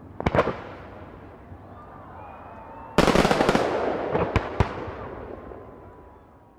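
Fireworks going off: a quick cluster of sharp bangs just after the start, then about three seconds in a sudden burst of dense crackling with two more sharp bangs, fading away, with faint whistles in between.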